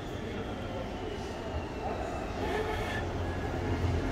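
Steady low rumble with indistinct voices of people around. A faint high tone glides slowly down over the first couple of seconds.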